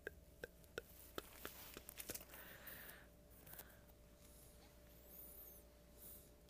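Faint handling noise of a clear plastic bag: a run of light clicks and crinkles for the first two seconds, then soft rustling.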